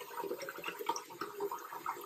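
Bathroom faucet running quietly and steadily into the sink basin, with small irregular splashes of water.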